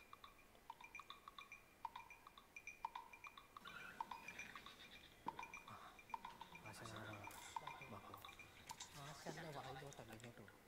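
Faint short clinks, about one a second, with quiet speech in the second half.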